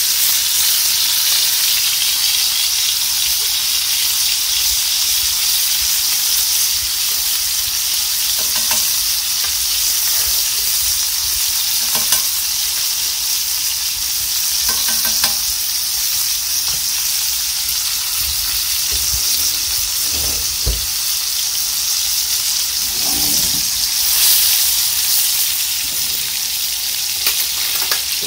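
T-bone steak frying in butter and garlic in a cast-iron skillet over high heat: a steady, loud sizzle, with a few brief knocks along the way.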